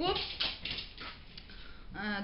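Pet house cats making a brief, faint cry.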